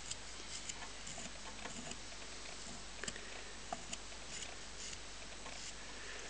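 A knife scraping cane off the tip of an unfinished double reed for a shawm: faint scratching strokes with a few small ticks, as thick cane is taken off a reed still far too stiff to sound.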